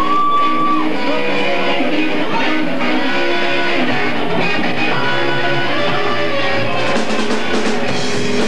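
Live punk rock band playing: an electric guitar riff with a bent note at the start, bass coming in about four seconds in, and drums with cymbals joining near the end.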